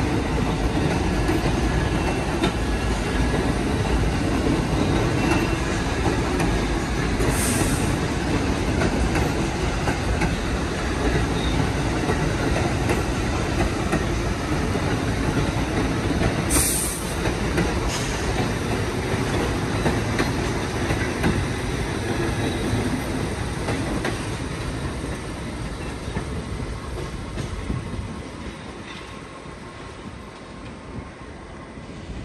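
New York City subway train running on the rails, a loud steady rumble with two short high hisses partway through. It fades away over the last few seconds as the train pulls off.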